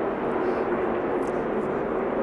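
NASCAR stock cars' V8 engines running at speed down the track, a steady drone with no break.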